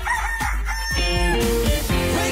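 A rooster crowing over background music, with a music jingle taking over about a second in.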